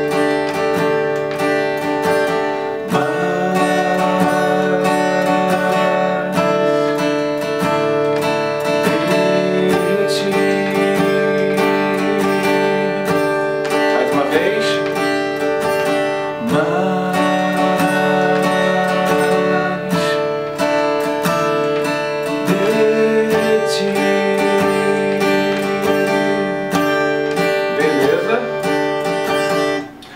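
Acoustic guitar strummed in a down, two-up, down, two-up, down-up pattern, moving through D, D9 (Dsus2) and D4 (Dsus4) chords, with a man singing along from about three seconds in.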